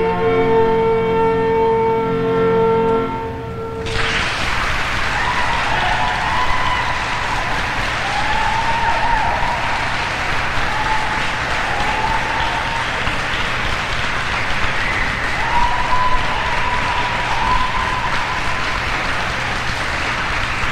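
The last held notes of a duet on a Casio electronic keyboard and a saxophone end about four seconds in. Audience applause then starts at once and carries on steadily.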